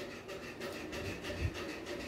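Faint rubbing and handling noise with one soft low thump about one and a half seconds in.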